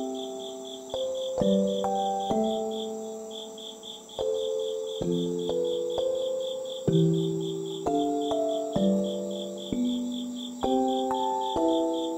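Slow, gentle background music of soft keyboard notes, each struck and left to fade, about one new note or chord a second. Under it, insects chirp in a steady, high, pulsing trill of about five pulses a second.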